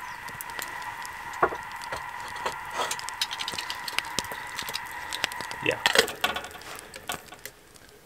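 Small wood fire crackling with scattered sharp pops under a kettle on a grill, over a steady faint high whine that stops about six seconds in.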